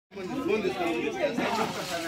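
People talking, with voices overlapping in chatter.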